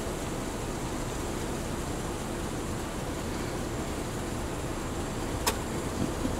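Steady low outdoor rumble, with one short sharp click about five and a half seconds in.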